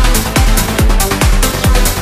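Progressive trance music: a steady four-on-the-floor kick drum, a little over two beats a second, with a deep bass note filling the gaps between kicks and bright hi-hats on top.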